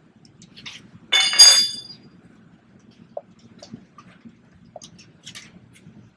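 A loud metallic clatter with a brief ring about a second in, then faint scattered clicks and ticks as lug nuts are loosened by hand off a pickup truck's wheel.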